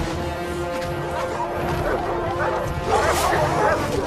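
Orchestral film score with long held notes, over which beasts snarl and growl in a dog-like way. The snarling builds from the middle and is loudest about three seconds in.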